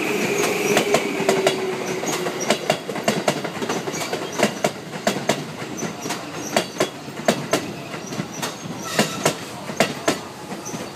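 JR 211 series electric train rolling past, its wheels clacking sharply over the rail joints, often in quick pairs, over a steady rolling rumble. A steady high tone rings over the first two seconds or so and fades out.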